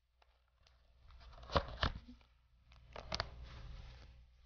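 Faint rustling and a few short, sharp clicks of a disposable dust mask being fitted over the face, its elastic strap pulled back over the head, with the clearest pairs about one and a half and three seconds in.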